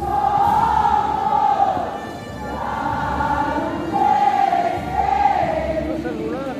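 Many voices singing a religious hymn together in long held phrases, each about two seconds, over the murmur of a large crowd.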